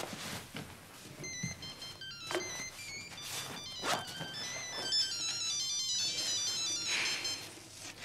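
Mobile phone ringtone: a quick melody of short electronic beeps at changing pitches, starting about a second in and stopping shortly before the end, with a few soft knocks among it.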